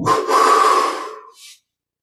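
A man's loud, forceful breath, probably an exhalation, lasting about a second and a half and fading out. It is taken during a stomach-recharging breathing exercise.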